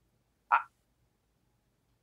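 A single brief croaky vocal noise from a person, about half a second in, against otherwise quiet room tone.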